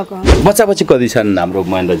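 Conversational Nepali speech, with one dull low thump about a quarter of a second in: the handheld interview microphone being knocked as it is moved from one speaker to another.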